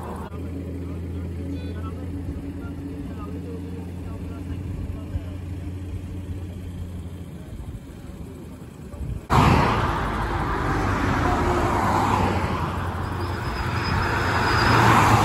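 A steady low vehicle engine hum. About nine seconds in it cuts abruptly to loud road and wind noise from a moving car.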